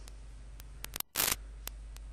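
Steady low electrical hum and hiss of the recording, broken by a brief drop to silence about a second in, then a short burst of noise.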